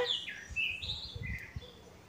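A small bird chirping several short, high notes, some sliding down in pitch, over about the first second and a half.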